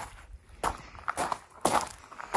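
Footsteps walking, about three steps roughly half a second apart.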